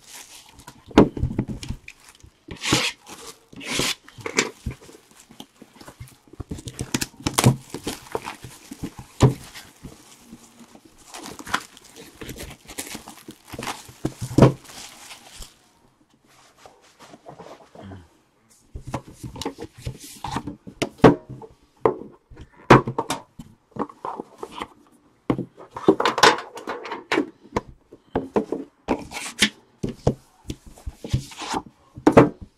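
Sealed Panini Immaculate Soccer hobby boxes being handled, slid and set down on a tabletop mat by hand: irregular knocks, thuds and scraping, with a pause of a few seconds about halfway through.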